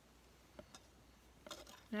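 Faint, sparse taps and light rustles of hands handling a sheet of stamped chipboard on paper, over quiet room tone.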